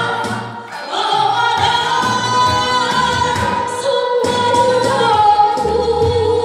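A woman singing a held, sliding melody into a microphone over amplified musical accompaniment with a steady, repeating bass line. The music dips briefly about half a second in.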